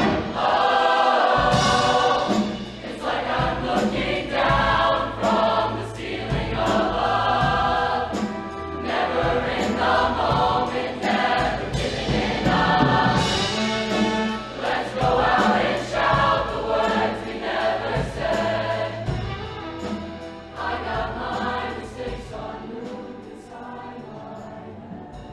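A large mixed show choir singing in harmony in phrases a second or two long, over low sustained accompaniment. It grows softer toward the end.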